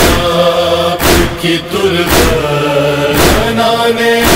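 Noha backing: a male chorus humming long held chords, with a sharp thump-like beat about once a second.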